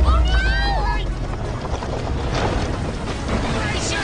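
Animated film soundtrack: children's voices cry out briefly in rising and falling pitch near the start, then a steady rushing noise with a low rumble runs under orchestral music.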